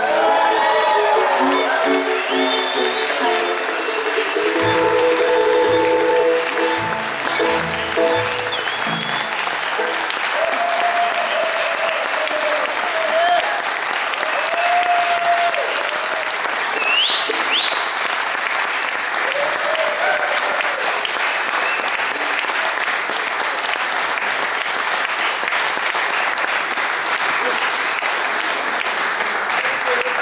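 A bluegrass band with fiddle, guitar and upright bass plays the closing notes of a tune for the first several seconds. Then the audience applauds and cheers, with a couple of rising whistles, for the rest.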